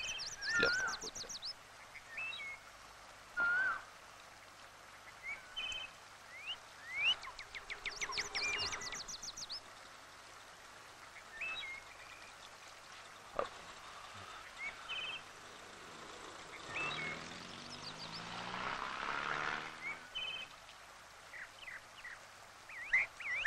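Birds chirping and whistling, with short whistled glides and a couple of fast trills. A rushing noise swells and fades about three-quarters of the way through.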